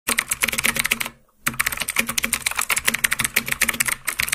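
Computer-keyboard typing sound effect: quick, sharp keystrokes, about ten a second, with a short break about a second in, accompanying text being typed and erased on screen.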